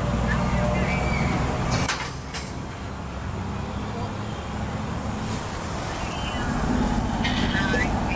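Freight train's tank cars rolling past: a steady low rumble of wheels on the rails, with a sharp clank about two seconds in and a few short high-pitched squeaks near the end.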